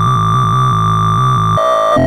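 Synthesized tones from a sorting-algorithm visualizer, sounding the bars' values as bogosort shuffles and checks the array. A high tone is held, then drops to a lower one about one and a half seconds in, over layered lower tones.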